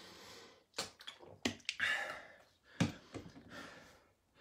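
A man drinking from a plastic sports bottle and breathing hard between swallows, winded from exercise, with a few sharp clicks as the bottle is handled.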